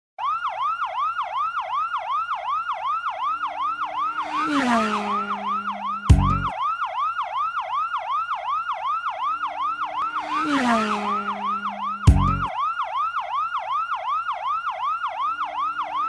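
Emergency siren in fast yelp mode, each rising wail repeating about four times a second. A swoosh that falls in pitch, followed by a heavy thud, comes twice, six seconds apart, in identical form like a looped sound effect.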